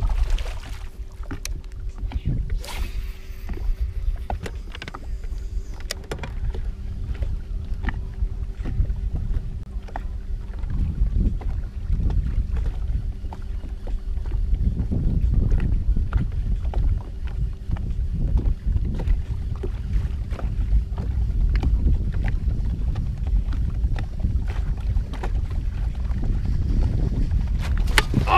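Wind rumbling on the microphone and water lapping on a bass boat's hull, with a faint steady hum through about the first half. Scattered light clicks and knocks come from the casting tackle and reel.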